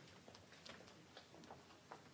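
Near silence: faint room tone in a hall with about half a dozen small, irregular clicks and taps.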